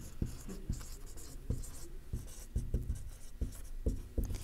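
Someone writing, with scratchy strokes and scattered small knocks and handling noises at an irregular pace.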